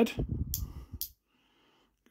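Hard plastic toy parts handled close to the microphone: a low rustle with two sharp clicks about half a second apart in the first second.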